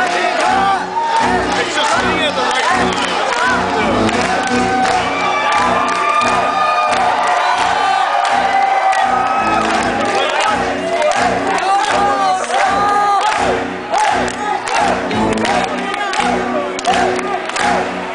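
A live symphonic metal band playing loudly, with pounding drums and sustained melodic lines, heard from within the crowd, which is shouting and cheering along.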